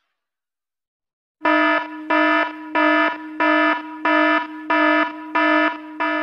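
An alarm-style warning beep sound effect, starting about a second and a half in: a buzzy pitched tone pulsing evenly, about seven pulses at roughly one and a half a second.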